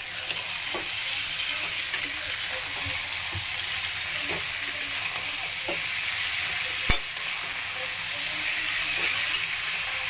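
Eggplant pieces sizzling as they fry in oil in a steel kadhai, with a metal spatula scraping and clinking against the pan as they are stirred. A sharp knock of the spatula on the pan comes about seven seconds in.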